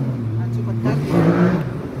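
Voices talking over a steady low hum.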